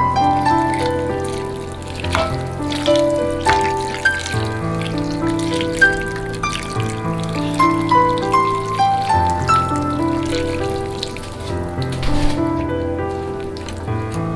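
Background music: a melody of short notes over long-held low notes.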